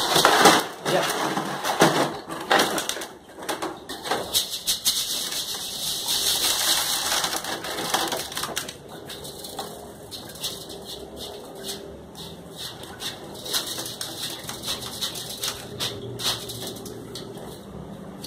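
Bran and mealworms rustling and scratching on a mesh sieve as it is shaken and brushed by hand, a dense patter of small scrapes and clicks. It thins out and gets quieter about nine seconds in, as the sieve is tipped over a bucket.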